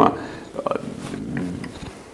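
A man chuckling softly, mixed with a few quiet words.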